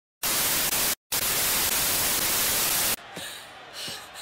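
Television static: a loud, even white-noise hiss that cuts out briefly about a second in, resumes and stops abruptly near the three-second mark. A much quieter cartoon soundtrack follows.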